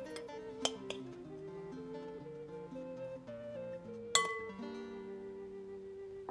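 Background music: a plucked-string melody moving in steps, with a few light clinks in the first second and a sharper one about four seconds in.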